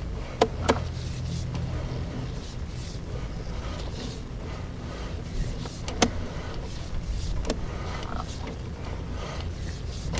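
Sewer inspection camera's push cable being reeled back out of a drain line: a steady low hum with a few sharp clicks, two close together at the start and a louder one about six seconds in.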